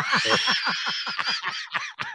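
A man and a woman laughing together, a quick run of short bursts of laughter that thins out near the end.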